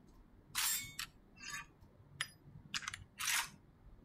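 A pistol being reloaded by hand: a quick series of sharp mechanical clicks and clacks, about six in three seconds, as the break-action single-shot pistol is opened, loaded and snapped shut. This is anime sound effects heard within a reaction video.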